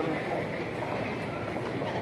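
Steady ambient noise of a busy airport terminal hall, with a murmur of distant voices.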